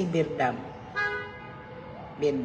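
A short, steady horn-like toot of about half a second, about a second in, following the end of a woman's spoken word.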